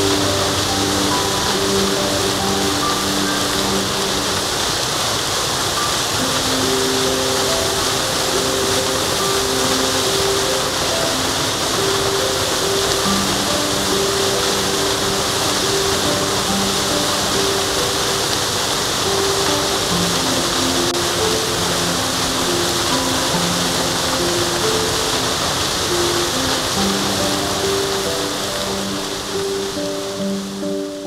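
Steady rushing roar of a waterfall running in heavy flow after rain, with soft background music of slow sustained notes laid over it; both begin to fade near the end.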